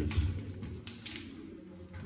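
Light clicks and rattles of a key and its keyring in a cabinet door lock as someone fumbles with it and the lock does not open. There are a few sharp ticks, one right at the start and a couple around the middle.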